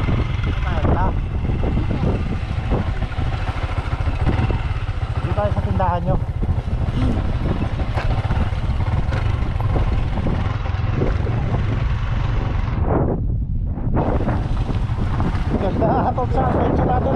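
Yamaha Sniper motorcycle running as it is ridden along a dirt trail, with heavy wind rumble on the microphone.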